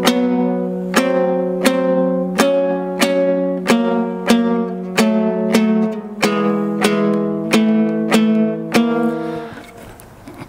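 Kazakh dombra beaten with down-and-up strokes of the right hand in a slow, even rhythm, about three strokes every two seconds, over a steady low note. The fretted note changes a couple of times, and the last stroke rings out and fades near the end.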